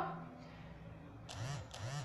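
Quiet room with a faint low hum, broken by two brief soft voice sounds, a short murmur with rising-then-falling pitch, about a second and a half in.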